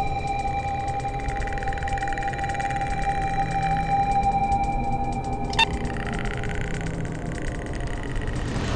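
A steady low rumble under a continuous held tone, with a single sharp click a little past halfway.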